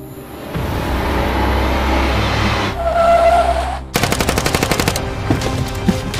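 A rapid burst of automatic gunfire, about a dozen shots a second for about a second, starting about four seconds in, with a few single sharp cracks after it. Before it comes a rising noisy swell that cuts off abruptly.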